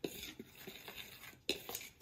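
A metal fork stirring dry flour in a plastic mixing bowl: quick, light scraping ticks, with a sharper knock about one and a half seconds in.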